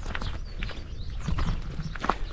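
Hikers' footsteps crunching on a gravel track, a few irregular steps.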